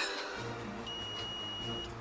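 Digital multimeter's continuity beeper giving one steady high beep lasting about a second, starting about a second in. It signals that the black wire's connection through the hinge conducts and is good.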